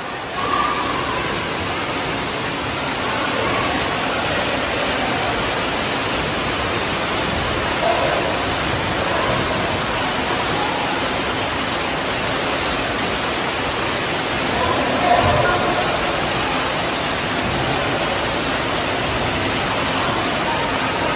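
Steady rush of water from an artificial rock waterfall pouring into a shallow wading pool, with faint children's voices now and then.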